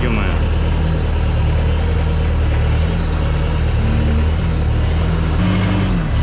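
Skid-steer loader's engine running steadily, heard from the operator's seat, its note shifting briefly near the end.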